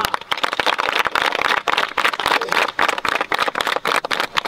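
A crowd of children clapping their hands in dense, rapid applause.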